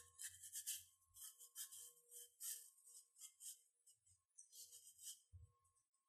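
Near silence, with a series of faint, soft swishes of a paintbrush stroking wet paint onto watercolor paper.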